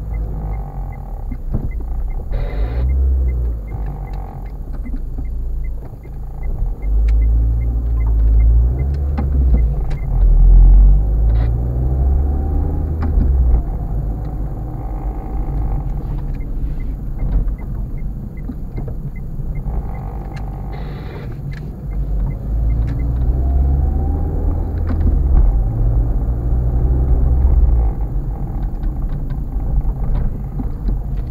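Low rumble of a car's engine and road noise heard from inside the cabin while driving, swelling louder in two long stretches. A faint regular ticking runs through the first few seconds.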